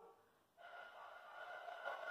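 Air blown across the embouchure hole of a bamboo pífano (transverse fife), starting about half a second in: mostly breathy rushing air with a faint steady whistle tone under it, a test blow at finding the embouchure.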